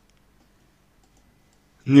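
Near silence in a pause of a man's talk, with his voice starting again at the very end.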